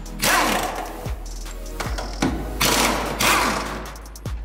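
Cordless power wrench on a socket extension running in two bursts on the engine-mount bolts, over background music with a steady beat.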